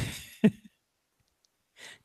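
The tail of a laugh trailing off in an exhaled sigh, with a short voiced sound about half a second in, then about a second of silence before a faint intake of breath.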